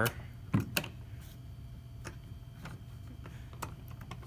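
Light plastic clicks and taps as the tether between an American Flyer FlyerChief locomotive and its tender is fitted back into its socket, a handful of separate clicks spread over the few seconds.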